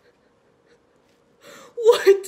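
Near silence, then, near the end, a woman's sudden gasp: a short breathy intake followed by a brief voiced cry.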